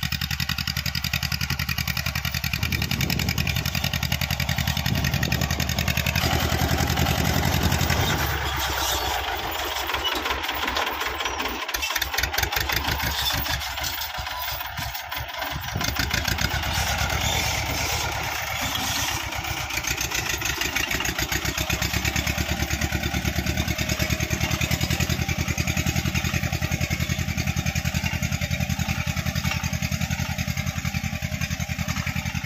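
Massey Ferguson tractor's diesel engine running steadily under load as it pulls a tine cultivator through the soil. Its low note falls away for several seconds in the middle, then comes back.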